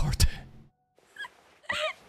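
A sudden loud thump at the start, then an anime girl's high-pitched crying whimpers: short sobbing cries about a second in and again near the end.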